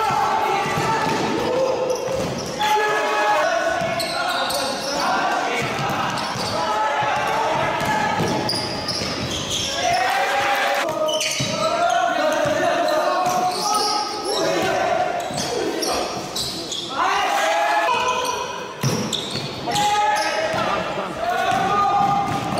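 Live sound of a basketball game on a hardwood gym floor: the ball bouncing on the boards amid players' and coaches' shouts, all echoing in a large hall.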